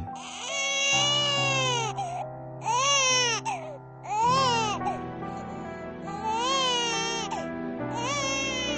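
Newborn baby crying in four wails that rise and fall in pitch, the first the longest, over steady held background music.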